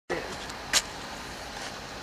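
Steady background noise with a single short, sharp click about three-quarters of a second in.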